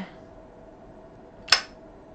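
A cigarette being lit with a handheld lighter over faint room hum, with one short sharp click about one and a half seconds in.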